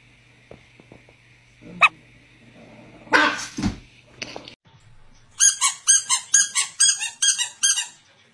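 Small dogs, a chihuahua and a Yorkshire terrier puppy, barking: a single sharp bark about two seconds in and a louder burst about a second later. Near the end comes a rapid run of high-pitched yaps, about four a second.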